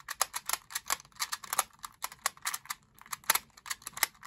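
Rubik's Clock puzzle worked by hand: rapid, irregular clicking as its dials are turned and its pins are pushed in and out.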